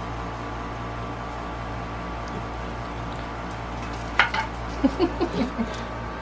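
Steady low hum, then a sharp rising squeak about four seconds in and a quick run of short squeaks and clicks in the following second or so.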